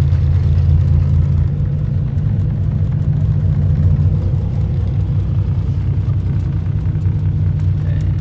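Steady low rumble of a moving car heard from inside its cabin: engine and tyre noise on a wet, snowy highway.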